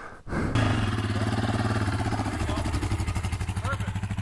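A small off-road engine that comes in suddenly about a third of a second in, then idles steadily with an even pulse.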